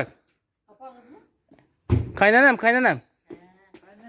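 A person's voice calling out: two loud syllables with rising-then-falling pitch about two seconds in, after a faint voice about a second in.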